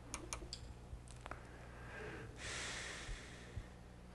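Faint, light clicks, as from a computer mouse or keyboard, several in the first half second and a couple more about a second in, over a steady low electrical hum. About two and a half seconds in comes a short breathy rush of noise lasting under a second.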